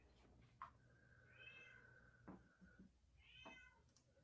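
Two faint cat meows, one about a second and a half in and a shorter one near the end, over a faint low hum.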